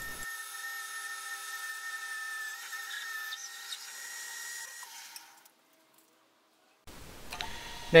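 Lathe spinning an acetal blank at 550 rpm while a 31.5 mm drill in the tailstock cuts into it, a steady machine whine with the hiss of cutting. It fades out a little past halfway, then after a short silence the lathe is heard running again near the end.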